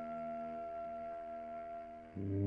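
A soprano saxophone holding one long, steady note in a free-jazz quartet, slowly fading away.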